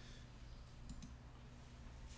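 A couple of faint computer mouse clicks close together about a second in, over a low steady hum.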